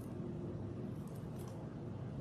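Quiet, steady low room hum with a few faint soft ticks from hands handling cord.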